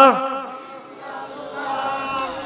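A man's melodic religious chant ends on a held, wavering note just after the start and fades away in echo. Then a fainter chanted voice carries on quietly.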